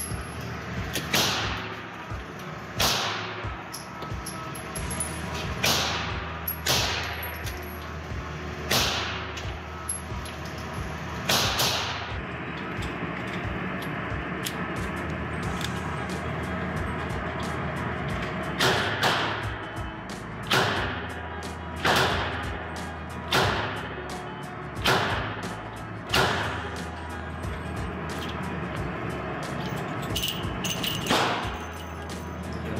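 Revolver shots firing .38 Special rounds at an indoor range: sharp cracks every second or two, each with a ringing echo off the range walls. A steadier string of about half a dozen shots starts about 18 seconds in.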